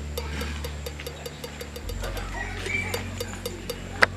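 Background soundtrack of a low, steady drone with a fast, even ticking about five times a second. The drone drops lower about halfway through.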